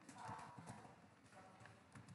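Near silence with a few faint, short clicks and knocks, bunched in the first half second and then scattered.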